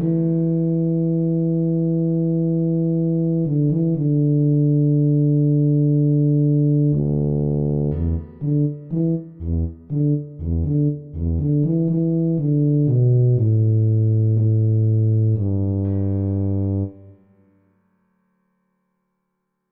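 Synthesized tuba from sheet-music playback, playing a single melody line at half speed. It holds two long notes, then plays a quick run of short separate notes, then a long low note that stops about a second before the end.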